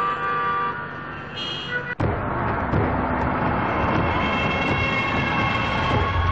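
Film soundtrack: music for about two seconds, then an abrupt cut to loud vehicle noise with a steady, siren-like tone over it.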